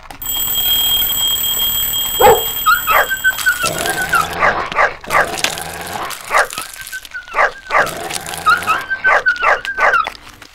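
A group of dogs barking and yipping excitedly, short yelps coming in quick runs from about three seconds in, over a high wavering whine. A steady high-pitched ringing tone fills the first three seconds, and a single deeper bark sounds about two seconds in.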